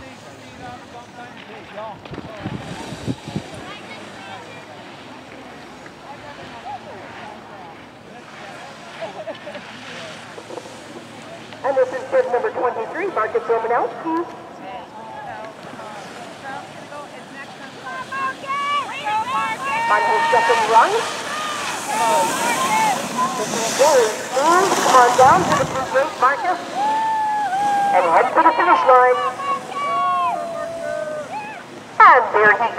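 People's voices calling out, loudest and most frequent in the last ten seconds, over steady wind noise on the microphone.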